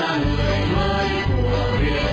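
Background music playing continuously under a photo slideshow.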